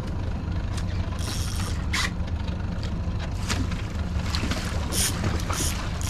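Boat outboard motor running steadily at low trolling speed, a continuous low rumble. A few short clicks and brief hisses come and go over it.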